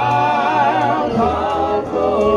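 Male gospel quartet singing a held chord in close harmony without accompaniment, the voices wavering with vibrato and the bass stepping lower about halfway through.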